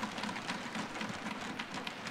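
Faint scattered applause from the seated members: an even patter of many light claps.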